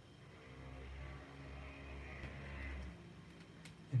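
Low hum of a motor vehicle passing, swelling and then fading over about three seconds.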